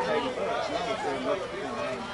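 Indistinct chatter: several voices talking over one another.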